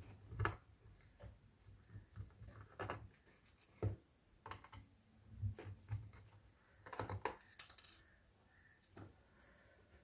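Phillips screwdriver working the screws out of a laptop's plastic bottom cover: faint, irregular clicks and taps of the bit on the screws and case.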